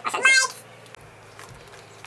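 A girl's high-pitched voice for about half a second, then quiet room tone with a faint low hum.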